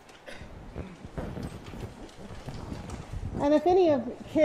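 A congregation sitting down in wooden church pews, making irregular knocks, thumps and shuffling. A voice starts speaking near the end.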